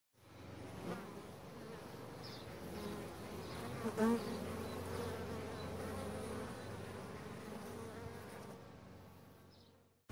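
Bees buzzing, fading in just after the start and out near the end, louder for a moment about four seconds in.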